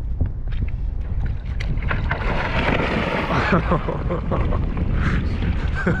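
Wind buffeting the microphone with a steady low rumble. About two seconds in there is a rushing splash and slosh of water as a person in a wetsuit lowers into a hole cut in lake ice, and a laugh comes at the very end.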